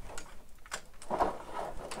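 Faint clicks and light scraping of 3D-printed plastic armour panels being handled and worked loose from a Transformers figure.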